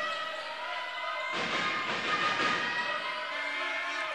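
Basketball arena sound during play: a ball being dribbled on the court under crowd noise, with a steady held tone running through it that thickens about a second and a half in.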